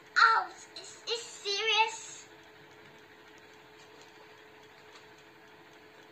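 A young girl's excited voice: a short exclamation just after the start, then a brief wavering, sing-song cry, both over within about two seconds. After that only quiet room tone with a faint steady hum.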